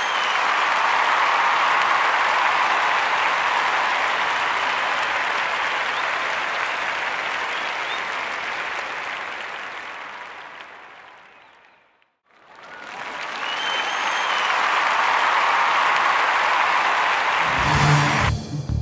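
A crowd applauding, with a short whistle near the start. The applause fades away about twelve seconds in, then swells again with the same whistle, so the same stretch of applause is heard twice.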